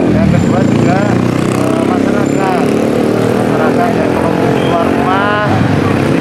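Street traffic with motorbike engines running steadily, and people's voices talking over it.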